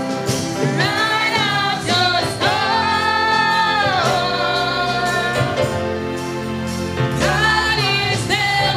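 A small group of women singing a gospel song together into microphones, their voices holding long notes.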